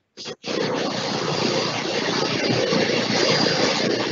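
Steady rushing noise from a faulty video-call audio connection, starting after a brief dropout about half a second in. It takes the place of the speech.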